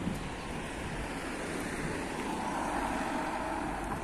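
Street traffic noise with a car driving up close, its engine and tyre noise growing a little louder in the second half.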